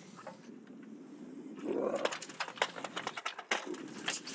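A Eurasian lynx shut in a wire-mesh box trap gives a short, low growl a little under two seconds in. A quick run of sharp clicks and rattles follows as it moves against the cage.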